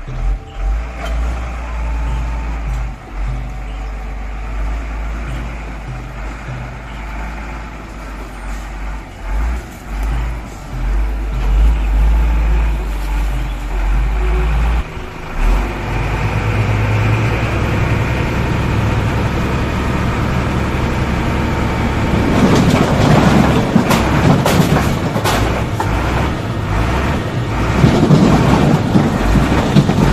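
Tipper truck's diesel engine running steadily as the truck reverses in, then the engine note changes as the dump bed is raised. In the last several seconds come loud, rough bursts of the load sliding and clattering out of the tipping bed.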